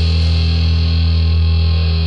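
One low chord on a distorted electric bass, struck just before and left ringing steadily, its bright top end slowly fading, with no drums.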